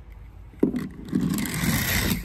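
Small die-cast toy car set down with a knock about half a second in, then rolling and scraping down a plastic ramp for about a second and a half.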